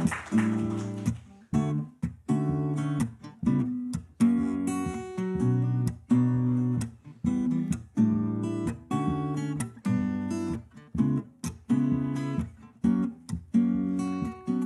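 Acoustic guitar strummed in a steady rhythm with changing chords: the instrumental introduction to a song, before the voice comes in.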